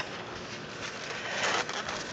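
Egg cartons being handled and shifted in a shopping cart, with a rustling scrape of cartons rubbing against each other that grows louder about one and a half seconds in.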